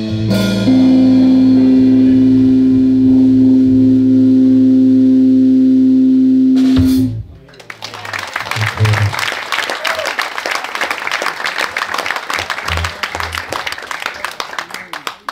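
Live blues band of electric guitar, bass and drums holding a loud final chord that cuts off about seven seconds in, followed by audience applause.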